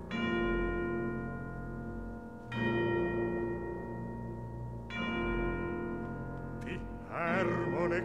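Orchestral bells tolling three times, about two and a half seconds apart, each stroke ringing on over low sustained orchestral tones. Near the end a baritone begins to sing.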